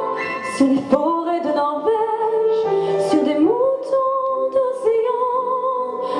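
A woman singing a slow French chanson melody with vibrato on long held notes, accompanied by two pianos.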